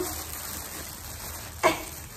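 A steady, even hiss, with one short sharp sound about a second and a half in.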